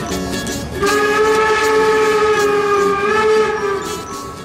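A train horn blows one long, steady blast. It starts about a second in and lasts about three seconds, after a few plucked ukulele notes.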